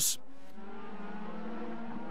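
A brief swoosh at the very start, then the steady drone of DTM touring cars' V8 engines running at speed.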